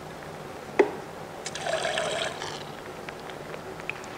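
Thin clay slip squeezed out of a squeeze bottle: a click about a second in, then a short squirt of liquid slip lasting about a second.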